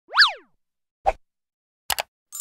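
Animated-intro sound effects: a quick cartoon 'boing' whose pitch shoots up and falls back, then a short thump about a second in, and a quick double click near the end, like a mouse click.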